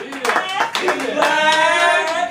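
Audience clapping, then a voice drawn out in one long held note, a drawn-out call or sung tone, over the fading claps.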